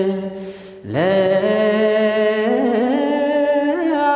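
Slow vocal chant with long held notes and small ornaments. After a short break just under a second in, a new note swoops up and is held, stepping a little higher later on.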